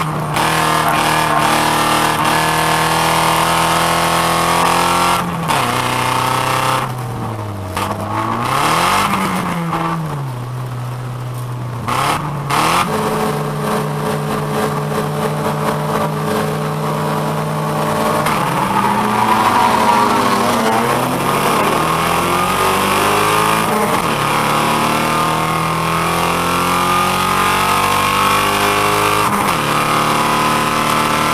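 Folkrace car's engine heard from inside the cabin, pitch rising under acceleration and dropping as the driver lifts and changes gear, over and over.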